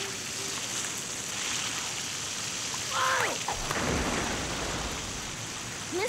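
Fire hose gushing a steady stream of water, a continuous rushing spray. About three seconds in, a brief falling pitched sound cuts across it, followed by a short low rumble.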